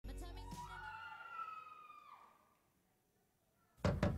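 A long, wolf-like howl on the routine's recorded song track: one held note that climbs, then falls away and fades about two seconds in. After a brief silence, knocking starts just before the end.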